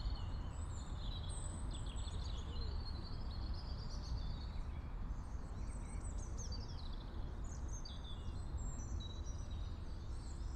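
Outdoor ambience picked up by a Clippy EM172 lavalier held still in silence: birds chirping and twittering on and off over a steady low rumble.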